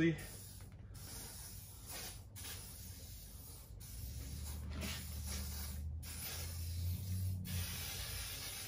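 An aerosol can of WD-40 hissing in a series of sprays with short breaks between them, misting the inside of engine cylinder bores to protect them from rust.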